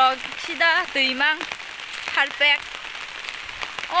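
Rain pattering steadily on an open umbrella held overhead, a constant hiss dotted with fine drop ticks.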